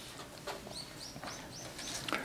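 A small bird chirping faintly: a run of short, high chirps, about four a second, in the second half.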